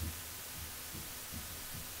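A faint low hum with a few soft, low thumps, the loudest at the very start, in a lull between spoken phrases.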